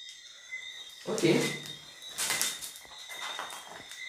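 Mostly speech: a short spoken 'ok' about a second in, followed by brief hissy bursts, over a faint steady high-pitched whine.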